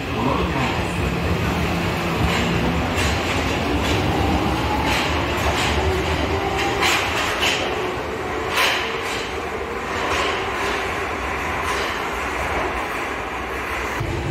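Tokyo Metro Marunouchi Line subway train pulling out of an underground platform: a motor whine rising in pitch as it gathers speed, with the wheels clicking over rail joints, over a steady running rumble.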